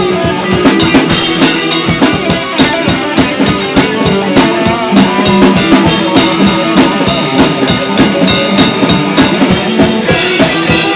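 Instrumental stretch of a home-recorded rock song: a drum kit playing a busy steady beat under distorted electric guitars, with no vocals here.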